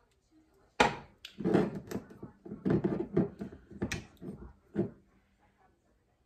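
Kitchen handling sounds: a sharp knock about a second in, then a few seconds of irregular knocks and clatter as bottles of sesame oil and soy sauce are opened, poured into a measuring spoon and put down.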